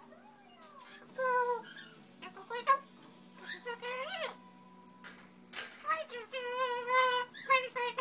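African grey parrot calling: a string of whistled, voice-like calls, some sliding up in pitch, with a longer wavering call about six to seven and a half seconds in.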